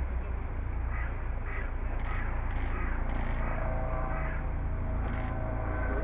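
Outdoor ambience: a steady low rumble, with four short, harsh animal calls spread through the middle and near the end.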